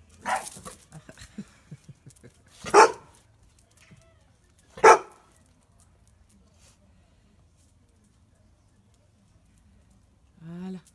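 A dog barks three times, single sharp barks about two seconds apart, the second and third the loudest.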